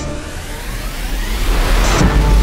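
A rising white-noise sweep in the background music, building up over a low bass hum, like a riser leading back into the track.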